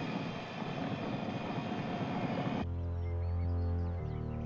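A car engine running with a noisy rush for about two and a half seconds, then cut off abruptly by synthesizer music with sustained low bass notes.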